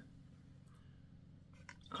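Near silence: low room hum with a couple of faint, soft wet touches as cotton candy is dabbed with water.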